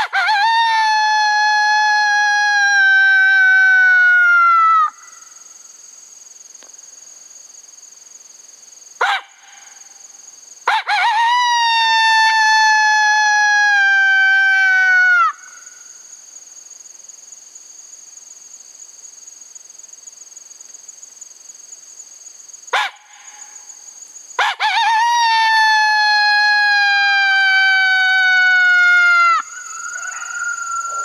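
Two-reed Pup Howler coyote call blown by mouth: three long imitation coyote howls, each about five seconds, that jump up at the start, slide slowly down in pitch and break off with a quick drop. A short sharp blip comes before the second and third howls.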